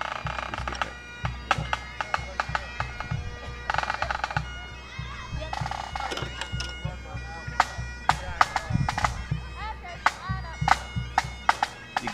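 Highland bagpipes playing: steady drones sounding under a chanter melody with quick clipped grace notes.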